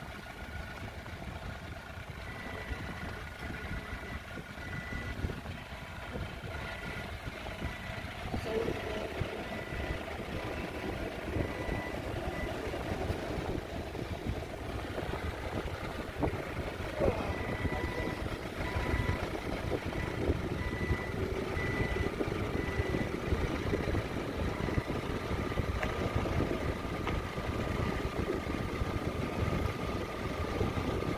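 Forklift engine running steadily, getting louder about eight seconds in, while a back-up alarm gives two long runs of evenly spaced high beeps.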